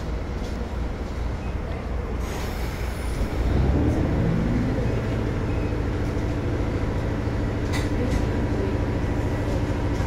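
JR H100 diesel-electric railcar standing with its diesel engine running. About two seconds in there is a brief hiss of air, and a second later the engine's hum rises and settles into a louder, steady drone with a clear pitch.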